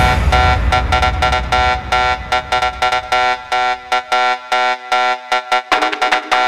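Hands-up trance track going into a breakdown: the kick drum and bass fade out over the first few seconds, leaving a bright synthesizer riff of short, rapidly repeating chord stabs.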